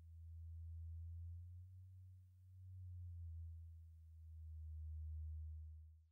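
Faint, low synthesizer drone closing out a dark synthpop track: one deep steady tone that swells and dips in slow waves about every two seconds, then drops away right at the end.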